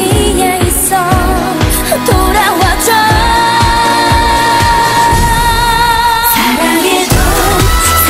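Pop song with singing over a beat, sped up and pitched higher than normal. The singer holds one long note from about three seconds in until about seven seconds, when the song moves into a new section.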